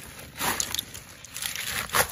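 Woven plastic sack rustling as it is handled, in two short bursts, about half a second in and again near the end.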